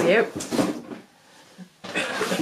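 Handling noise as things are picked up off-camera: a few short knocks about half a second in, a quiet moment, then a sudden knock near the end that runs into rustling, like a drawer or packaging being moved.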